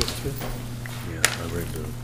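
Low, murmured voices close to the microphone, broken by two sharp snaps, one at the start and a louder one a little over a second in, over a steady low hum.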